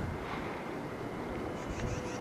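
Quiet, even outdoor background hiss in bare woodland, with light wind on the microphone; no distinct sound stands out.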